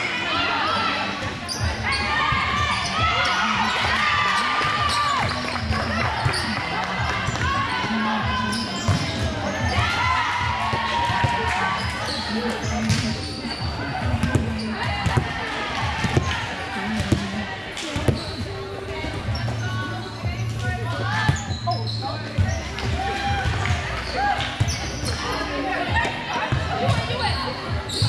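Indoor volleyball match in a large echoing hall: scattered sharp ball hits and bounces over many overlapping voices of players and spectators calling out and chattering.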